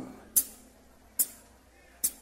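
Drummer's count-in before a pagodão song: two sharp high clicks nearly a second apart, with quiet between them.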